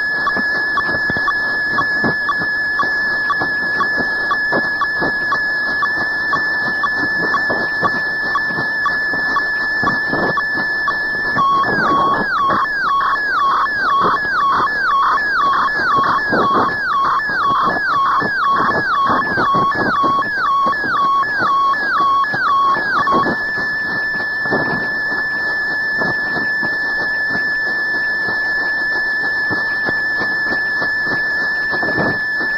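Industrial noise music: a steady, high-pitched electronic tone over dense crackling clicks. Partway through, the tone breaks into a falling swoop repeated about twice a second, like a warbling siren, and after about twelve seconds it settles back to the steady tone.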